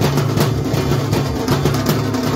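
Hindu temple aarti music: drums beaten in a steady rhythm with a hanging brass temple bell struck over them, a dense, loud clatter of strikes a few times a second.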